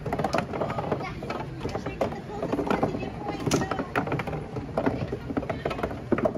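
Busy crowd chatter of children and adults, no clear words, with frequent short sharp clacks and knocks scattered throughout.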